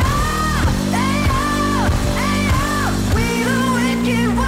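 Background music: a song with a sung vocal line over a steady beat.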